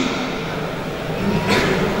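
A pause in a speech given into a public-address system: steady hiss and room noise of a large hall. There is a brief noise about one and a half seconds in.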